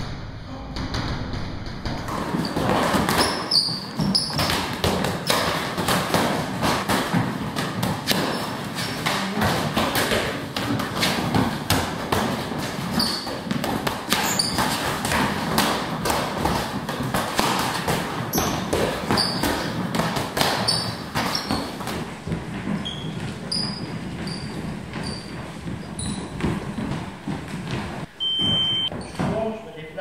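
Gloved punches landing on focus mitts and pads in a boxing gym: a long run of quick dull smacks, with voices talking underneath. A short beep sounds near the end.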